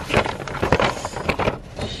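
Paper shopping bag rustling and crinkling in irregular crackles as a boxed item is pulled out of it.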